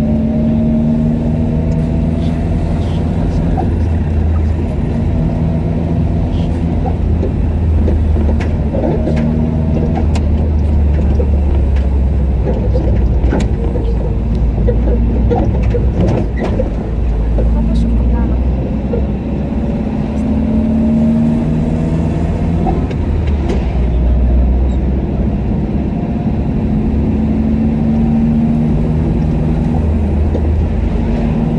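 Car engine and road rumble heard from inside the moving car in slow city traffic, the engine note rising slowly in pitch twice as the car gathers speed.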